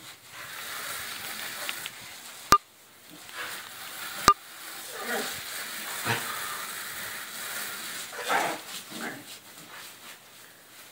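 Garden hose spray hissing steadily against a plastic pallet, with a dog yelping several times in the second half. Two sharp clicks come about two and a half and four seconds in.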